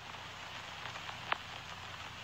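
Faint, steady background hiss with a single short click about a second and a half in.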